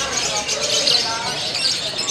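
A lovebird's contest song: a continuous, rapid, high-pitched chattering trill that runs without a break, over voices in the background.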